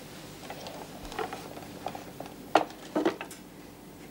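Light clinks and knocks of a brass candlestick and a glass being set down on a wooden table, several small taps followed by two louder, slightly ringing knocks about two and a half and three seconds in.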